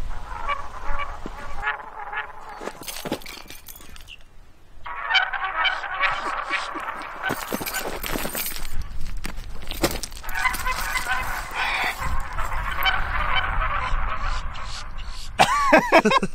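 Background music laid over the footage, with a dense, busy mid-range texture and a quieter stretch about two to five seconds in.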